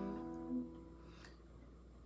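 Acoustic guitar chord ringing out and fading over about a second after being strummed, with a soft single note sounding about half a second in.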